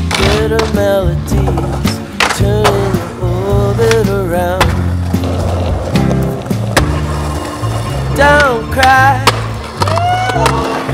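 A song with a steady bass line and a wavering sung melody, with skateboard sounds mixed over it: sharp board pops and landings on concrete.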